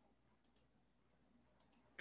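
Near silence with a few faint computer mouse clicks: one about half a second in and a couple more near the end.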